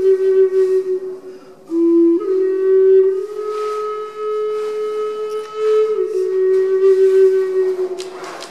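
Wooden Native American flute playing a slow melody of long held notes that step up and down a little in pitch, with audible breath hiss. A little under two seconds in, it briefly drops to a lower, quieter note before rising again.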